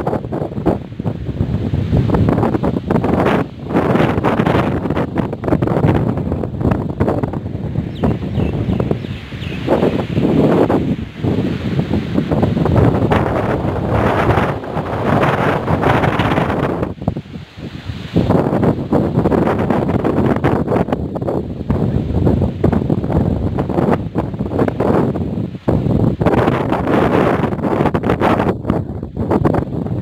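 Strong storm wind gusting hard against the phone's microphone, a loud rushing noise that surges and falls with each gust, with the trees' leaves thrashing in it. The wind eases briefly a little past halfway, then picks up again.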